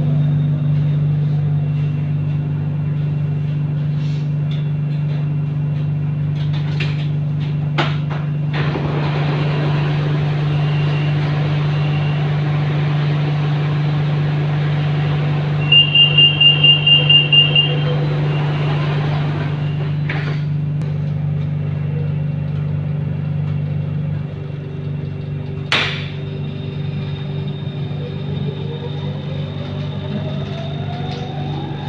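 Interior of a Siemens Modular Metro train car: a steady electrical hum, with outside air noise while the doors are open. About halfway, the door-closing warning sounds as a rapid run of about eight high beeps over two seconds, followed by a clunk as the doors shut and the outside noise cuts off. Near the end the traction motors' whine rises in pitch as the train accelerates away.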